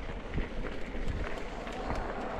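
Mountain bike rolling over a dirt singletrack: steady tyre and rattle noise with scattered knocks.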